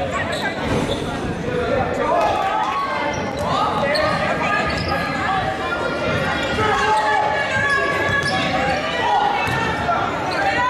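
Girls' basketball game in a gymnasium: many players' and spectators' voices calling out over a basketball bouncing on the hardwood floor, all echoing in the large hall.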